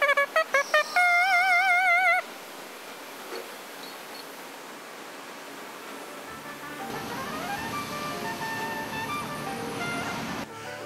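Trumpet mouthpiece buzzed on its own, without the horn: a few short notes, then one high note held with wide vibrato that stops about two seconds in. After a quiet stretch, soft background music with sustained notes fades in after about six seconds.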